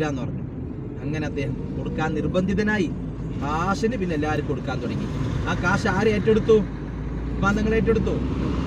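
People talking inside a moving car, over the steady low rumble of the car's engine and road noise.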